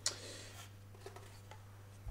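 Quiet handling sounds as a small metal-cased power supply unit is turned over in the hands: a light click at the start and a few faint ticks, over a low steady hum.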